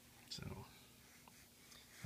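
Near silence with a faint steady low hum; about a third of a second in, a person makes one short breathy vocal sound.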